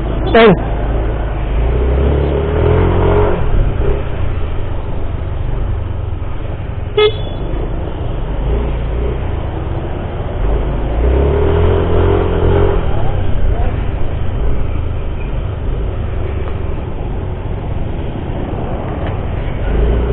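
Motor scooter running while riding on a street, with engine and road noise that swells twice as it accelerates. A short horn toot about seven seconds in.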